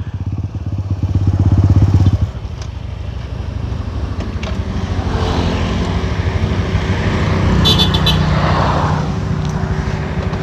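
Trail motorcycle engine running at idle close by, louder for the first two seconds and then settling to a steady, even beat. Passing motorbikes on the road add a swelling and fading rush in the second half.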